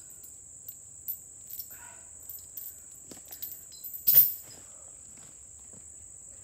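A steady high-pitched drone of insects, with scattered light crunches of footsteps in dry leaf litter and one loud thump about four seconds in.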